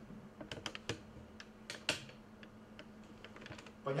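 Typing on a computer keyboard: irregular light clicks at an uneven pace, one sharper click about two seconds in, over a faint steady low hum.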